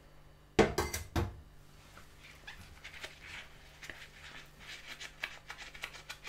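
Rubber-gloved hands working at a sink of soapy water: a sudden loud burst of three quick knocks about half a second in, then a run of soft clicks and crackles.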